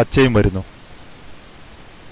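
A voice narrating for about half a second at the start, then a steady faint hiss of background noise with no other sound.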